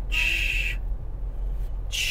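A person making a hushing "shh" sound, about half a second long, then a second short one near the end, over the low rumble of a moving car's cabin.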